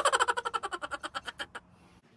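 Small bird chattering: a quick run of short, high chirps, about a dozen in a second and a half, that fades and trails off.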